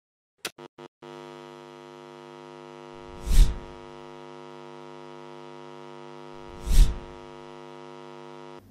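Title-sequence sound design: three quick ticks, then a steady electronic hum, crossed by two whooshes about three and a half seconds apart.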